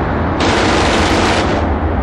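Battle sound effect of dense, continuous gunfire with machine-gun bursts over a low rumble, with a brighter burst of fire from about half a second in that lasts about a second.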